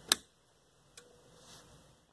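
A sharp click of a Yamaha Stagepas 300's power rocker switch being flipped, then a second, much fainter click about a second later.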